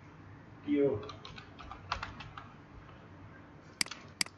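Computer keyboard being typed on: a quick run of keystrokes as a word is entered, then a couple of sharper clicks near the end.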